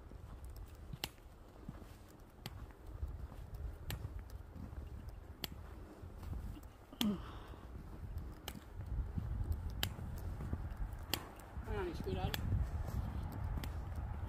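Footsteps on snow while walking, a sharp crunch roughly every second or so, over a steady low rumble of wind and handling on the phone microphone. Brief voice sounds come about seven seconds in and again near the end.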